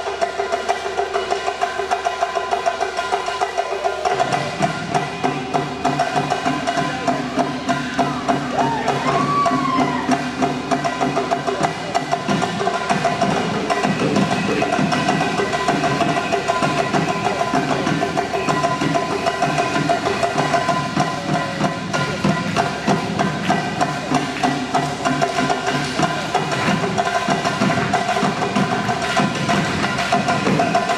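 A live folk band plays upbeat dance music with a steady beat of sharp, wood-block-like percussion strokes. A lower part joins about four seconds in.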